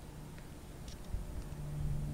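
Distant light aircraft engine droning overhead, a steady low hum that grows louder about halfway through, over low rumbling noise.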